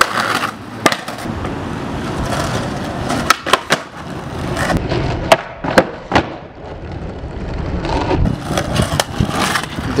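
Skateboard rolling over paved plaza tiles with a steady wheel noise, the board sliding along a ledge at the start. Sharp clacks of the board hitting the ground come in a cluster a little past three seconds in and again a few times around five to six seconds in.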